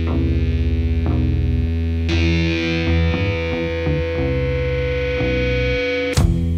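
Heavily distorted electric guitar playing alone with long held notes, pitched down an octave through an effects unit so that it sounds like a bass, with no drums.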